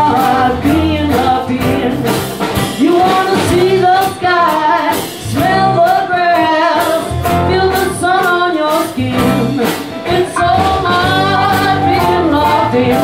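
Live band playing a song: a woman singing a held, wavering melody over guitar, bass guitar and drum kit.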